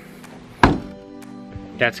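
Car trunk lid shutting with one solid thunk about half a second in, over steady background music.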